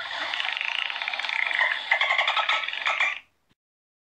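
Dolphin calling in a rapid, rattling chatter of clicks with squeals mixed in, cutting off suddenly a little after three seconds.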